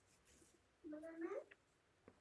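A short, faint vocal call about a second in, held level and then rising in pitch at its end.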